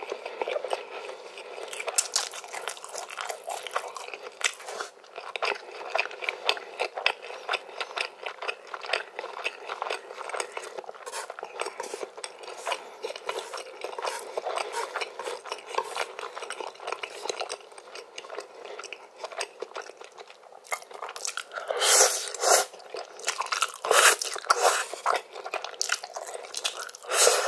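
Close-miked eating sounds of spicy Korean ramen noodles: a steady run of wet chewing clicks, with louder slurping bursts near the end as another mouthful of noodles goes in.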